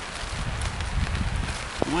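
Rain pattering on a tarp overhead, with low wind rumble on the microphone and the crinkle of a folded aluminium foil windscreen being handled. A short sharp click comes near the end.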